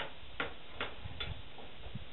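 Hammer blows at a building site: four sharp knocks evenly spaced about 0.4 s apart, then quieter, over a low rumble.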